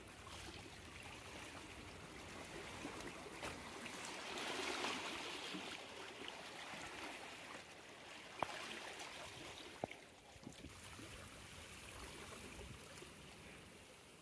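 Shallow seawater washing and trickling around rocks at the water's edge, swelling louder about four to five seconds in. Two sharp clicks come through the wash later on.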